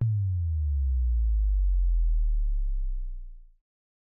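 Deep synthesized bass tone of a logo sting. It starts suddenly, slides down in pitch over about a second to a very low note, holds, and cuts off about three and a half seconds in.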